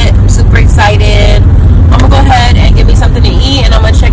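Loud, steady low rumble of a car on the move, heard inside the cabin, with a woman's voice over it.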